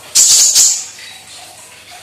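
Kolibri ninja sunbird singing: two quick bursts of high, rattling chatter within the first second.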